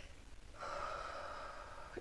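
A faint drawn breath, about a second long, starting about half a second in, just before speech resumes.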